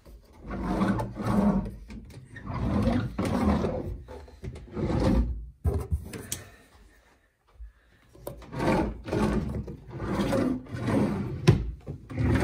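Bathroom vanity drawers and cabinet doors being slid and swung open and shut again and again, each stroke a short rubbing slide, with a couple of sharp clicks as they close.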